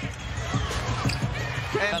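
Basketball bouncing on a hardwood court during live play: several irregular thuds over the steady murmur of an arena crowd.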